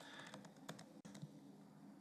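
Faint, scattered computer-keyboard clicks over near-silent room tone: keys pressed to advance presentation slides.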